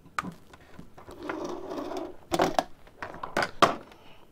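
Fingers working a programming-cable plug into the side jack of an Anytone D578UV mobile radio: a few sharp plastic clicks and knocks, the loudest in the second half, with a stretch of scraping and rubbing about a second in.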